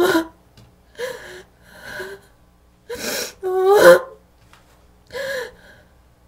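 A woman sobbing: about six gasping breaths, most broken by short wavering cries, the loudest a little after the middle.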